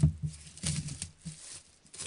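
Clear plastic shrink wrap crinkling and tearing as it is peeled off a CD album box by hand, in irregular crackles.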